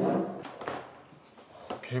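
Two light clicks, about a second apart, from a metal spoon against a stainless steel mixing bowl of bibimbap. A voice trails off at the start and another begins at the end.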